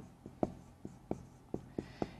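Dry-erase marker writing on a whiteboard: about six short, irregular taps and strokes.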